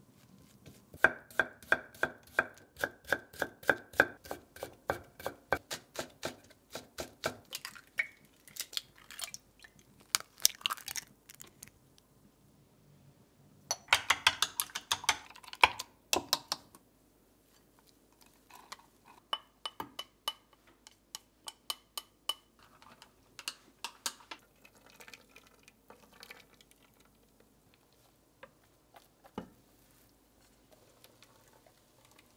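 A kitchen knife chops carrot on a wooden cutting board in quick, even strokes, about four a second, for several seconds. Midway there is a short burst of rapid clinking as eggs are beaten in a glass measuring jug. Lighter, scattered taps follow.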